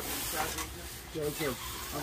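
A short rustling hiss at the start, then a person's voice speaking briefly about a second in.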